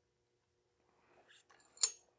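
Near silence, then faint handling noises and one sharp metallic clink near the end with a brief ring, as a steel hand tool is taken off the cylinder.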